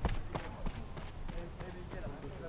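Sprinter's spiked shoes striking a rubber running track in a quick series of sharp taps, with faint voices in the background.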